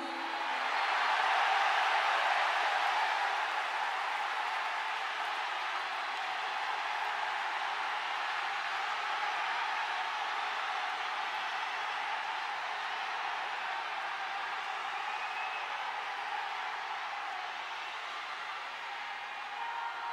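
Large arena audience applauding between songs at a live rock concert, swelling in the first couple of seconds and then holding steady.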